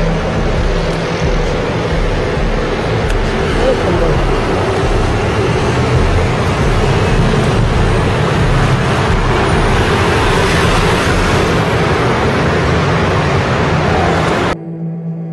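Dense, steady city traffic noise from cars and trucks on a busy multi-lane avenue, a constant rumble with no single vehicle standing out.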